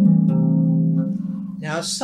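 Lever harp with a few notes plucked in the first second, left ringing as they fade. A man's voice starts near the end.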